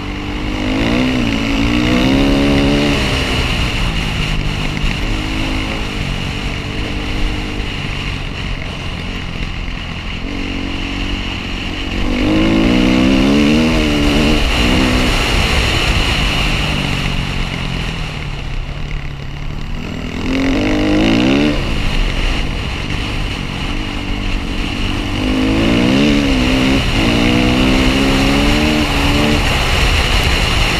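Dirt bike engine heard close up from a helmet-mounted camera while riding, its revs climbing through several pulls (about a second in, around twelve seconds, twenty seconds and twenty-six seconds) and easing off between them, over a steady rush of noise.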